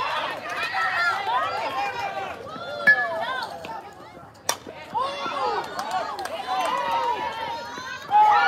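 Many high girls' voices shouting and chanting over one another from the sidelines, with a single sharp crack about four and a half seconds in as the bat hits the softball.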